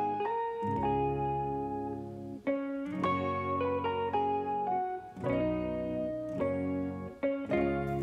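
Background music: a plucked guitar playing a melody over lower notes.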